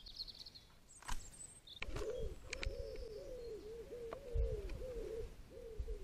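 A bird calling in a long run of low, quickly repeated arching notes, about three a second. A few short high chirps come in the first second or so.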